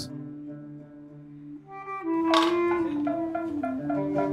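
Kamancheh, a bowed spike fiddle, playing slow held notes that step from pitch to pitch. About halfway through, shorter plucked string notes join in.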